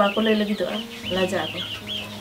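Chickens calling in the background: a steady run of short, high chirps, several a second, under a woman's talking voice.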